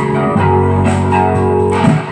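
Electric guitar playing sustained chords in a rock song, with no voice over it.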